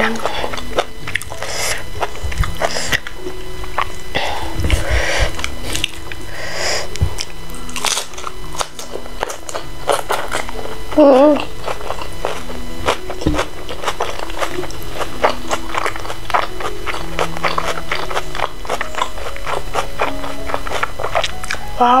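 Close-up eating sounds: biting into and chewing salted-egg fried chicken and rice by hand, with many short sharp bite and chew sounds, over soft background music. A short hum of enjoyment comes about halfway through.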